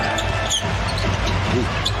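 A basketball being dribbled on a hardwood arena court over steady crowd noise, with a commentator's voice coming in near the end.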